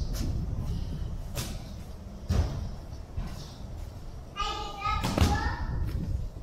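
Several dull thuds of a child's bare feet and body landing on and scrambling over foam-padded plyo boxes, spaced a second or more apart.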